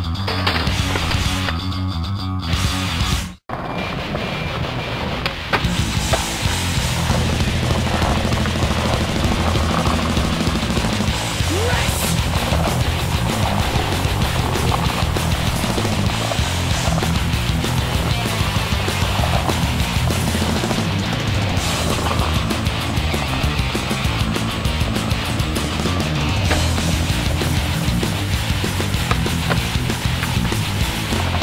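Background music with a steady, repeating bass line, playing throughout, with a brief sudden cut-out about three seconds in.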